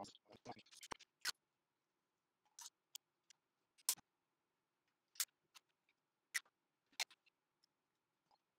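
Scattered small clicks and taps from hands handling thin wooden sticks and a hose on terracotta-pot ollas. A busier run of handling noise comes in the first second or so, then single sharp clicks about once a second.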